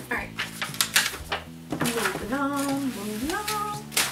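Items and packaging in a subscription box being handled and rummaged through: a run of light clicks and rustles, followed by a woman's short wordless voice sounds.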